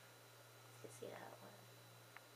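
Near silence: room tone with a steady low hum, and a faint, short voice-like sound about a second in.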